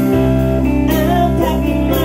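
Live band playing a song, with electric guitar to the fore over bass, drums and keyboard, and only a little singing.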